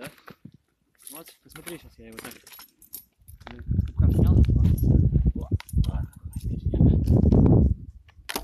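Light metallic clicks and clinks of a KP-320 body-grip trap and its wire being handled as a large beaver is lifted from the snow. Then, for about four seconds, a loud low rumble on the microphone, broken briefly in the middle.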